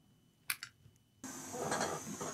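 Two small clicks about half a second in as a laptop battery's cable connector is pressed into its socket on the motherboard, then a steady hiss that starts abruptly a little after a second in.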